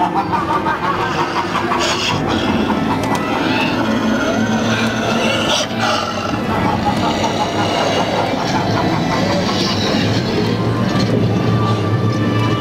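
Ride-through audio from a carriage in a haunted-house dark ride: the ride's soundtrack and voices over a steady low rumble.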